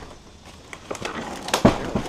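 An old wooden door being shifted by hand: scraping and a few sharp knocks of wood, the loudest knock about one and a half seconds in.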